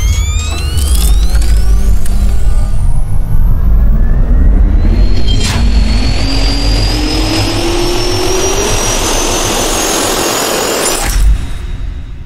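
Logo intro soundtrack: music with a rising, turbine-like whine over heavy bass rumble, building for about eleven seconds and cutting off sharply near the end.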